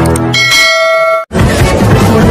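A bell-like chime sound effect rings brightly with many overtones from about half a second in and cuts off abruptly just past a second. Music plays before and after it.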